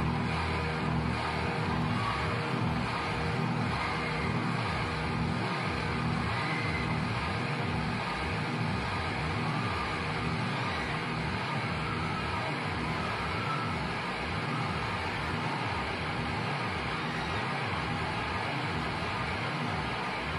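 Large festival crowd cheering in a steady, dense roar. A held low tone from the stage dies away about a second in.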